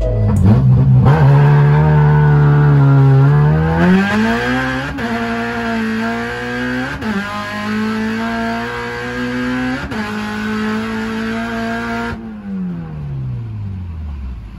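Honda K24 four-cylinder engine in a Civic pulling under acceleration. The revs climb for the first few seconds, hold high with brief breaks about five, seven and ten seconds in, then fall steadily near the end.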